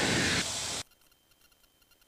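Steady hiss of engine and cabin noise carried through the aircraft's headset intercom, cutting off abruptly a little under a second in to dead silence as the intercom squelch closes.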